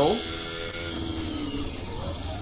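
Onboard sound of a Haas VF-22 Formula 1 car's turbocharged V6 engine running at high revs through a fast section, with a steady whine. The pitch sags slightly as the car eases off a little.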